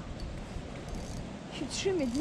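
Quiet, steady outdoor background noise with no distinct event; a man's voice starts near the end.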